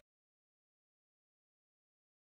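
Silence: the soundtrack is blank, with no sound at all.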